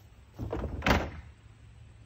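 The lid of a wheeled plastic garbage bin swinging down and slamming shut on the rim, one loud impact just under a second in.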